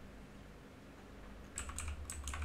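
Computer keyboard typing: a quick run of keystrokes starts about one and a half seconds in, after a stretch with only a faint low hum.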